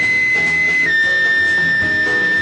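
Jazz ensemble music: a high wind-instrument note, nearly a pure tone, held and stepping down a little about a second in, over piano chords and bass.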